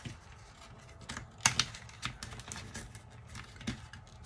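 A few light, irregular clicks and taps of cardboard and picture-frame pieces being handled and pressed into place on a table.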